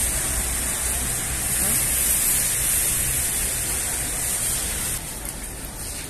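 Steady outdoor background noise while walking: a hiss with a low rumble, like wind on the microphone, and faint voices. It drops noticeably about five seconds in.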